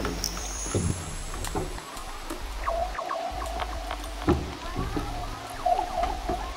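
Electronic music from a DJ set: a deep bass that cuts in and out under falling synth swoops and sharp percussive hits, with a held mid-pitched tone coming in about halfway.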